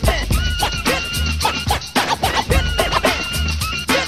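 Instrumental stretch of a late-1980s hip hop track: a steady drum beat with heavy bass under repeated turntable scratches, short sweeps rising and falling in pitch.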